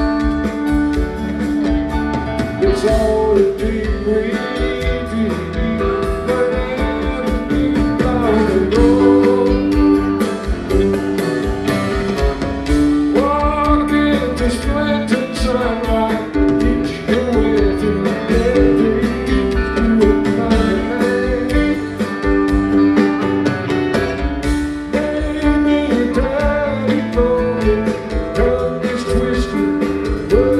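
Live rock band playing loudly and continuously: electric guitars, electric bass and drums, with singing.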